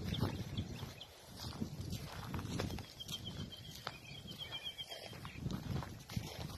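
Footsteps crunching and rustling over dry reed debris, twigs and litter, with irregular soft thumps and clicks. About halfway through, a bird gives a high trill of rapid, evenly repeated notes lasting about two seconds.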